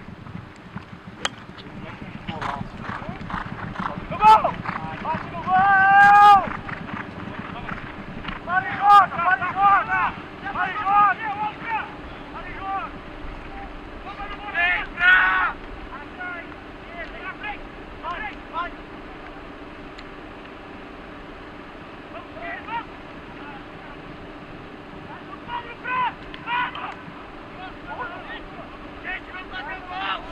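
Polo players shouting short calls to each other across the field, in bursts several seconds apart, over steady wind on the microphone.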